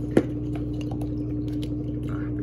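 Steady mains hum of an aquarium pump running, with a few faint ticks and one sharp click just after the start.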